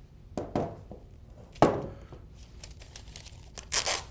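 Handling noises: two sharp knocks in the first two seconds, then, near the end, a quick rip as the paper printout strip is torn off a small portable printer.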